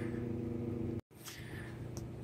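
Steady low background hum of room noise with no other event. About halfway it cuts out abruptly for an instant and then returns quieter.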